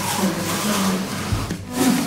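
Laughter, with a dull low thump a little past the middle.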